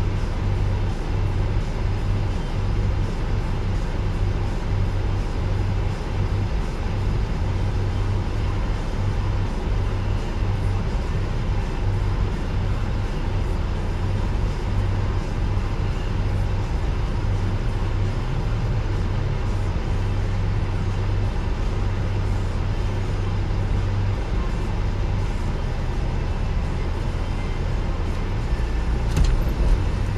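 Parked car's engine idling with its heater fan blowing, heard from inside the cabin: a steady low hum under an even rush of air. A few short clicks and knocks come near the end.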